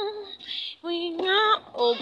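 A woman's high voice singing in drawn-out, bending notes, with a short breathy break about half a second in, before a spoken "Oh" at the very end.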